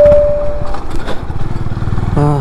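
Honda H'ness CB350's single-cylinder engine running at low road speed. A loud steady tone sounds over it for almost a second at the start.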